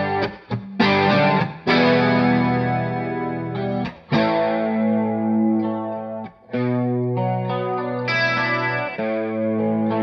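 2016 Gretsch G5422TG Electromatic hollow-body electric guitar with Blacktop Filter'Tron humbuckers, played through an amp: a run of strummed chords, each left to ring for a second or two, with short breaks between some of them.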